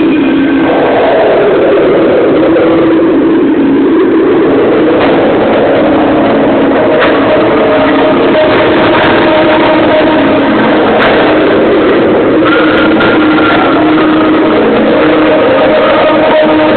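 Fireworks display through an overloaded camcorder microphone: a constant loud, distorted roar with a few sharp cracks about five, seven, eleven and twelve seconds in, and some held tones underneath.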